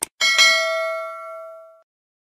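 YouTube subscribe-animation sound effect: a quick double mouse click, then a bell notification chime that rings out for about a second and a half and cuts off suddenly.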